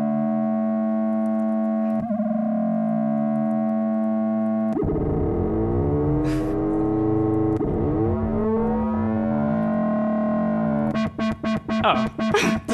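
Browser-based Web Audio synthesizer: a 220 Hz square-wave oscillator through a lowpass filter, with sine LFOs sweeping the sound, giving a steady buzzing tone whose overtones rise and fall in slow arcs. About five seconds in, after an LFO is turned up, the sweeps become faster and denser, with small clicks as the patch is re-run. Near the end the tone breaks into rapid choppy pulses.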